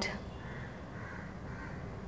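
Faint, distant bird calls, crow-like caws, over steady quiet room noise.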